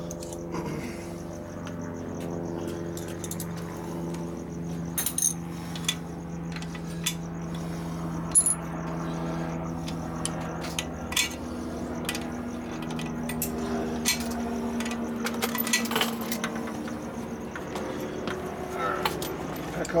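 A wrench and hand tools clink against metal on the motorcycle a handful of times, in scattered sharp knocks. Under them run a steady hum that shifts pitch now and then and a continuous cricket trill.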